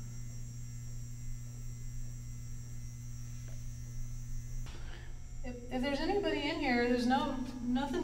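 Steady low electrical mains hum that cuts off abruptly a little over halfway through, after which a woman's voice starts speaking.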